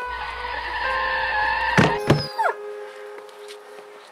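A car rushing in with a low rumble, then a hard thud about two seconds in followed by short falling squeals: a car striking a dog. Steady background music runs underneath.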